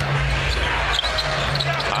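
Basketball being dribbled on a hardwood court, over steady arena crowd noise and a low hum.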